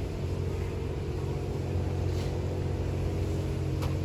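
Steady low mechanical hum with a few steady tones, unbroken throughout, and a single sharp click near the end.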